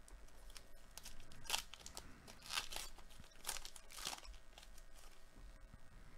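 Trading card pack wrapper being torn open and crinkled by hand. It makes a few short, quiet rustling tears, most of them between about one and a half and four seconds in.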